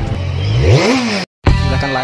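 Intro sting: an engine revving sound effect over music, rising sharply in pitch and cutting off abruptly about a second and a quarter in, followed by guitar music starting.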